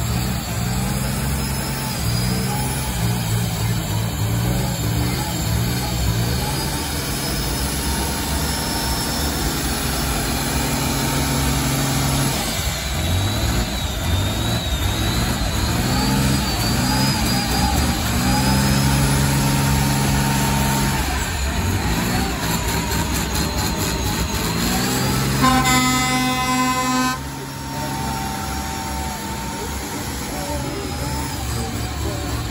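Rat-rod's turbocharged engine held at high revs through a burnout, the revs dropping and climbing back a few times while the rear tyre spins and smokes. Near the end a loud horn blares for about a second and a half.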